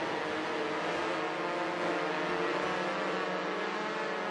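Dense, noisy electronic drone from a distorted sampled-trombone patch in a software sampler: many sustained low and middle pitches layered under a steady hiss.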